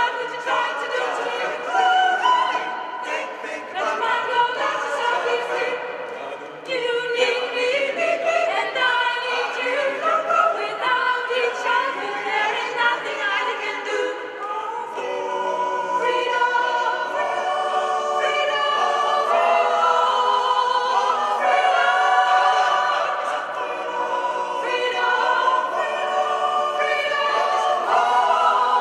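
Mixed choir of men's and women's voices singing a cappella in several parts, with a brief break about six seconds in and a fuller, louder sound from about the middle on.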